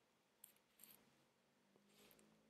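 Near silence: room tone, with two faint clicks about half a second and nearly a second in.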